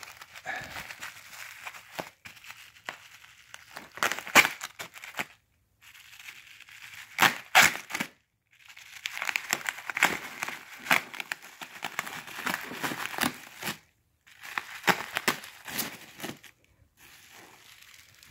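Bubble wrap crinkling and crackling in bouts as it is pulled and unwrapped by hand, with packing tape being peeled off; a few sharp crackles stand out, the loudest about four and seven seconds in.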